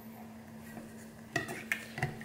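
Wooden muddler pressing down into a copper cocktail shaker tin, crushing blackberries and mint in the liquid. Quiet at first, then a few quick knocks of the muddler against the tin in the second half.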